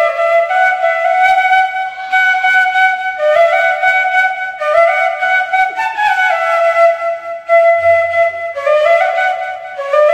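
Bamboo bansuri flute playing a solo melody of held notes that step and occasionally slide from one pitch to the next, with a breathy tone.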